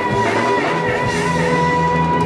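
Live heavy metal band playing with distorted guitars and drums, a long held note with a slight vibrato sustained over the band.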